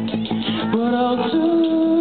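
Live rock band playing, with electric guitars and keyboard; long held notes come in about a second in.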